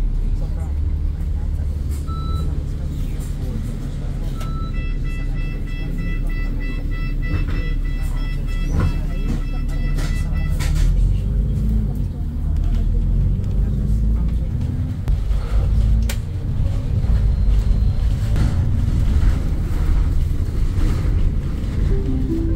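Double-decker bus running, heard from inside the upper deck: a steady low engine and road rumble. From about five seconds in, an electronic beeping sounds for about six seconds.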